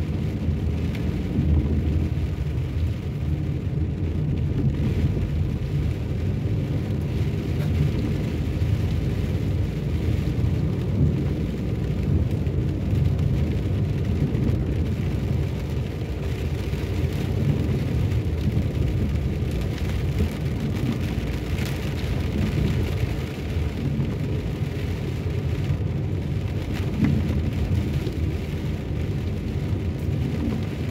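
Steady in-cabin noise of a car driving on a wet road: a low engine and tyre rumble with the hiss of tyres on wet tarmac and rain.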